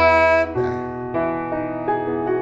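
A man's voice holds the top note of an ascending major scale over a sustained piano chord, ending about half a second in. Electric piano chords then ring on, changing twice and settling on an E major seventh sus2 chord.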